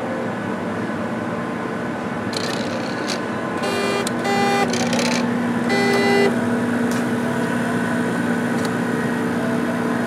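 HP 7673A autosampler tower and tray mechanisms whirring in a string of short motor bursts, from a couple of seconds in until about six seconds, as the syringe works up and down. Under it runs a steady mechanical hum from the running lab equipment.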